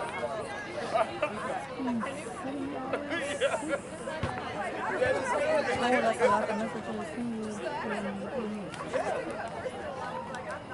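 Several people chattering at once, their voices overlapping with no single speaker standing out.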